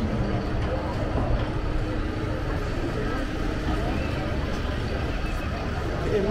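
Street ambience: indistinct voices of passers-by over a steady low rumble of traffic.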